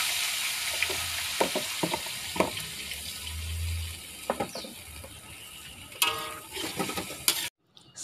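Leafy greens stir-frying in a wok of hot oil, just tipped in. A loud sizzle fades after about four seconds, with the spatula knocking and scraping against the wok and a few sharper knocks near the end.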